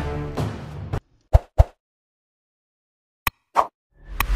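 Background music fading and cutting off about a second in, followed by two short pops, a pause, then a click and another pop: sound effects for an animated like and subscribe button being clicked.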